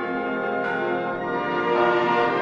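Theme music built on church bells ringing, a fresh peal of bells struck about every second over a sustained ringing chord.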